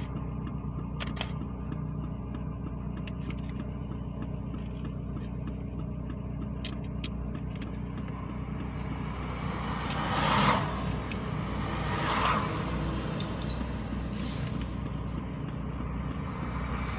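A car engine and road noise drone steadily, heard from inside the car. Other vehicles pass with two louder whooshes, about ten and twelve seconds in.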